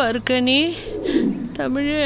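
Wordless vocal cries, each sliding down and then back up in pitch: a few short ones at the start, a longer one just after, and another near the end.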